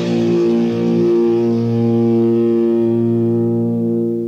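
A death metal band's guitars holding one last sustained chord that rings out steadily, its brightness slowly fading as the song ends.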